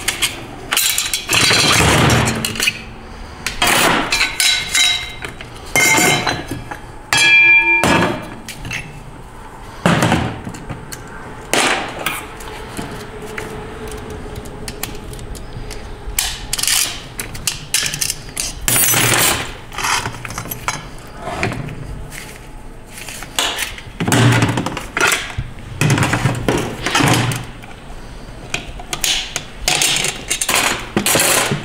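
Steel clutch drums, clutch plates and snap ring of a 6R80 automatic transmission clinking and clattering as they are pried apart, lifted out and set down on a metal workbench. The irregular metallic knocks are joined by a brief ringing about seven seconds in.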